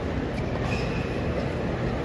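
A tennis rally heard from high in the stadium stands: a few sharp racket-on-ball strikes about a second apart over a steady low rumble of stadium ambience.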